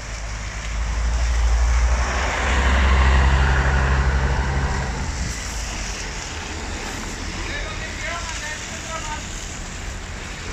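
Diesel engine of a coach bus rumbling as it passes close by, loudest about two to four seconds in, then fading. It gives way to a steady wash of slow traffic and tyres on the wet road.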